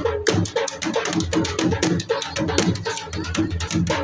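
Dhol drum played in a fast, steady jhumar rhythm, each stroke ringing briefly.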